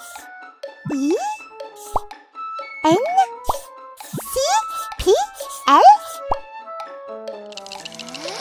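Cartoon sound effects over light children's background music: a run of about five quick rising 'bloop' plops with short clicks between them. A hissing noise comes in near the end.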